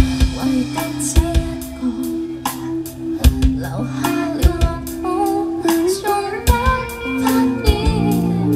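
Live rock band playing: a woman singing lead over electric guitars and a drum kit, with drum hits marking the beat.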